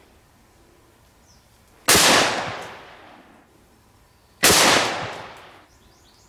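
Two rifle shots from a Ruger Mini-14 firing 55-grain full metal jacket 5.56 home loads, about two and a half seconds apart. Each crack is followed by a long echo that dies away.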